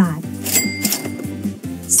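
A cash-register 'ka-ching' sound effect: a sharp strike about half a second in, then a bright bell ringing on to near the end, over background music.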